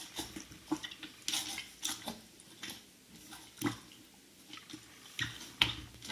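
Gunge-covered sneakers squelching as they are pressed and worked in thick slime: irregular wet squishes and sticky clicks, the loudest about a second and a half in, at around three and a half seconds, and near the end.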